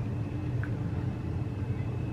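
A steady low background hum with a faint click about half a second in.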